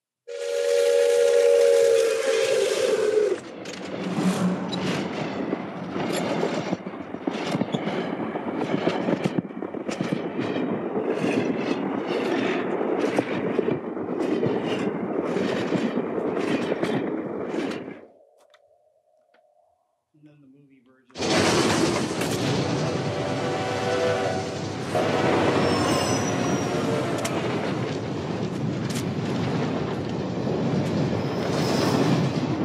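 Steam locomotive whistle blowing a steady chord for about three seconds, followed by the loud running noise of the passing train with dense rail clatter. After a near-quiet break of about three seconds, the train noise returns with more whistle blasts over it.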